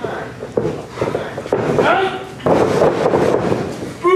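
Voices of people calling out and talking in a small hall around a wrestling ring, with a sharp knock about half a second in and a louder, denser stretch of voices and noise in the middle.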